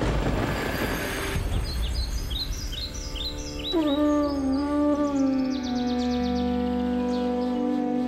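Background score over a scene change: a swelling wash of sound fades in the first second or so, then birds chirp in quick high series while a melody of long, gliding held notes enters about four seconds in.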